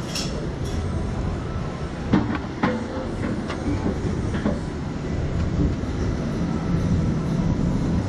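A few sharp clicks and knocks as the ride's padded over-the-shoulder restraints are handled and unlatched. The two loudest come about two seconds in, half a second apart, with fainter ones over the next two seconds, all over a steady low rumble.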